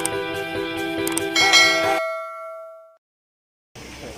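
Background music holding a steady chord, with the clicks and bell chime of a subscribe-button animation. The chime comes about a second and a half in. The music cuts off suddenly at two seconds and the chime rings on alone, fading out about a second later. A short silence follows.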